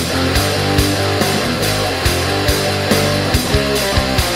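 Stoner/doom metal instrumental passage without vocals: electric guitar and bass holding sustained low chords over a steady drum beat with cymbals.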